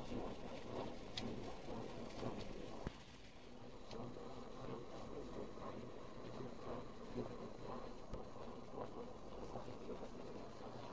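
Steady, fairly quiet engine and road noise inside a moving vehicle's cabin. A few faint clicks sound over it, the sharpest about three seconds in.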